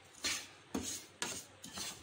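A wooden spatula scraping and stirring desiccated coconut in a nonstick frying pan, dry-roasting it, in repeated strokes about two a second.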